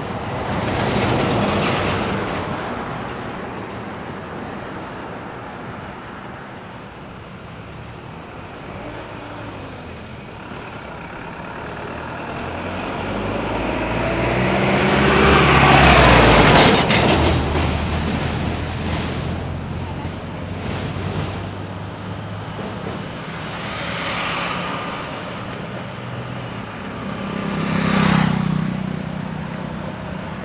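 Road traffic passing close by, one vehicle after another. The loudest is a heavy diesel vehicle whose engine note builds and fades as it goes past about halfway through. Lighter vehicles pass near the start and in the last few seconds.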